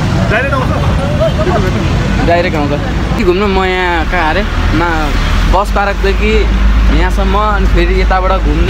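A young man talking over a steady low rumble of road traffic. Partway through, the rumble becomes the deeper drone of a bus engine heard from inside the bus cabin, growing stronger in the second half.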